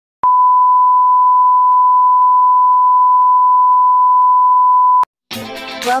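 A loud electronic beep tone at one steady pitch, held for about five seconds and cut off abruptly. Intro music with a sung or rapped line starts just before the end.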